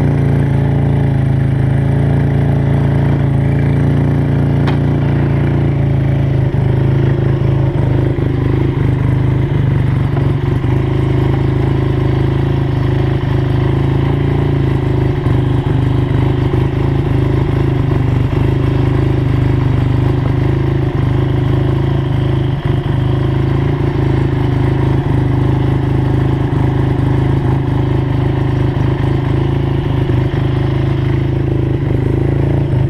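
A 1976 Suzuki RE5's 500cc single-rotor Wankel engine idling steadily; its note settles slightly lower about seven seconds in.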